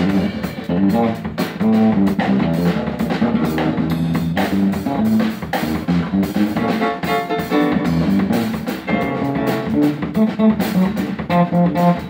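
Live band playing an instrumental jazz number, with guitar lines over a drum kit and bass.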